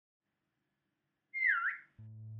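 A single short whistle-like tone about a second and a half in, swooping down in pitch and back up, then fading away.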